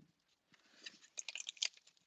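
Faint, short crackles of sticky tape being peeled off a paper card and the card being handled, clustered in the second half.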